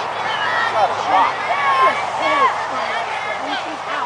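Indistinct voices calling out and chattering across a softball field, several of them high-pitched, none forming clear words.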